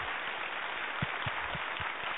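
Audience applause: a steady, even patter filling the hall, with a few soft low knocks from the podium in the middle.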